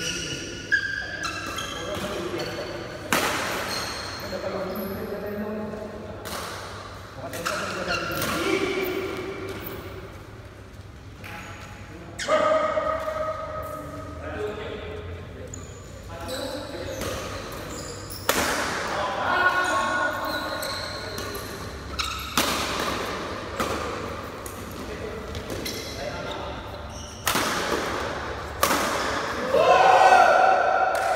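Badminton rackets hitting a shuttlecock in a rally: sharp hits roughly every second or two, echoing in a large sports hall, with voices in between.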